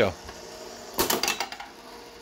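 A single sharp mechanical clack with a brief rattle from the backbox of a Stern Terminator 3 pinball machine, about a second in.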